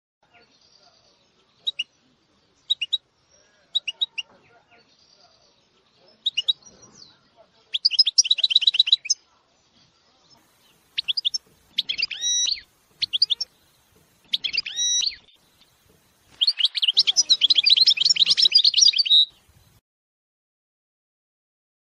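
Caged canaries and goldfinches singing: scattered short high chirps at first, then song phrases with rapid trills. The longest and loudest trill comes near the end.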